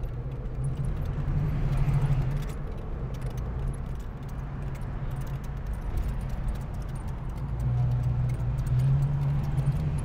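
The 1975 AMC Hornet's 304 V8 heard from inside the cabin while driving, a low steady drone that swells about a second or two in and again near the end, with light metallic jingling and rattling over it.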